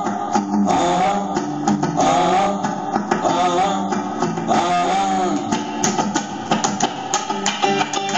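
Guitar playing an instrumental passage: a melodic figure that repeats about once a second. From about halfway through, sharp percussive strokes join it.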